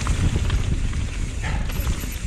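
Mountain bike descending a dirt trail at speed: wind rumbling on the camera microphone, with tyre noise on dirt and scattered knocks and rattles from the bike.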